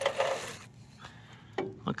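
Handling noise as a spark plug is drawn out of the generator's engine bay: a short rustling scrape of hand and sleeve, then a couple of light clicks.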